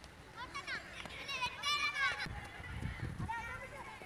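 High-pitched shouting of children at play, two calls that slide up and down, the second one longer and louder, with a short call again near the end. A few low thumps sound under the middle of it.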